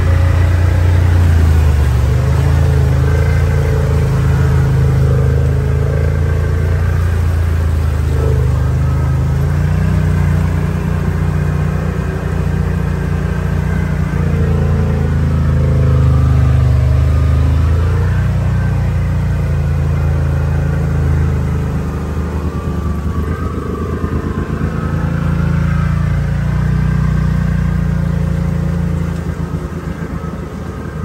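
Side-by-side UTV engine running under load, its pitch rising and falling as it is throttled through deep muddy water, heard from inside the cab.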